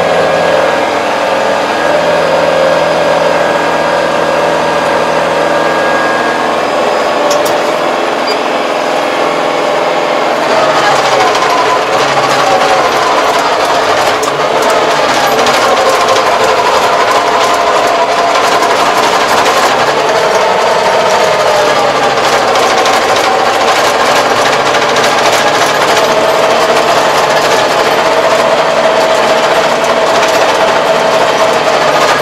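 Tractor engine running under tilling load with a rotary tiller, heard from inside the cab as a steady drone with a whine. About ten seconds in it grows rougher, with a dense rattle and a wavering whine over the engine.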